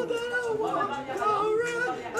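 A high-pitched voice singing held, wavering notes.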